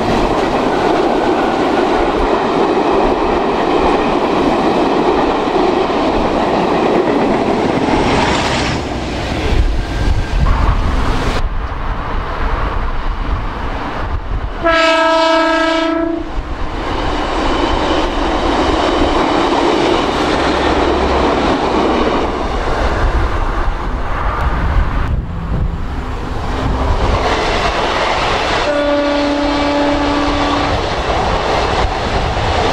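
Steam locomotive 44871, an LMS Black Five, and its coaches passing close below, rolling by for about ten seconds. Then a diesel multiple unit passes and gives a short single-note horn blast about halfway through. Near the end a Great Western Railway Intercity Express Train sounds its horn as it runs past.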